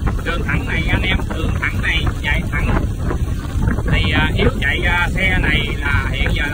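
Heavy wind buffeting the microphone of a moving motorbike, with engine and road rumble underneath.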